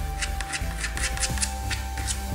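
A quick run of short scratches, about nine in the first second and a half and one more near the end, as a razor blade scrapes dried acrylic paint runs off a plastic flower pot, over steady background music.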